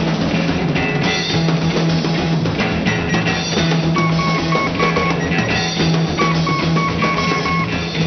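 Live rock band playing an instrumental passage: a drum kit with a busy beat and cymbals, electric bass holding a low note, and electric guitar. From about four seconds in, a high sustained guitar note repeats over the beat.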